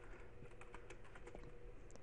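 Faint typing on a computer keyboard: an irregular run of light key clicks.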